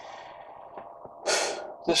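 A man's sharp, noisy intake of breath close to the microphone about a second in, over a faint steady hum, just before he starts speaking again.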